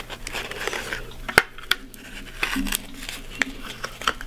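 Hands handling a foam airframe, stretching rubber bands over a steel landing-gear wire and wooden skewers: small clicks, taps and rubbing, with one sharp click about a second and a half in.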